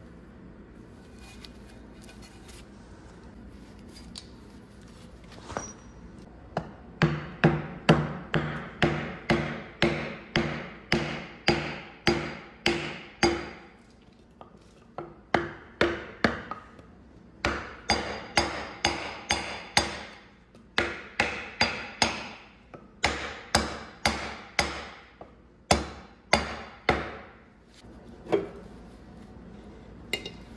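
Repeated hammer blows on the cast front housing of a Caterpillar C-10 diesel engine block, about two a second with short metallic ringing, starting about seven seconds in and pausing briefly twice before stopping near the end.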